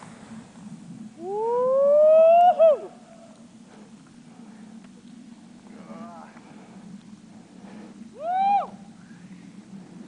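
A person whooping with excitement: one long whoop that glides up in pitch for about a second and a half and then drops, starting about a second in, and a shorter rising-and-falling whoop near the end, over a steady low hum.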